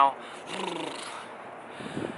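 Steady wind noise on the microphone, with a short, low vocal sound from a person, like a grunt or shiver, about half a second in.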